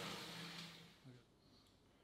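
Near silence: a man's voice trails off and fades in the first second, with one brief faint low sound about a second in, then only faint room tone.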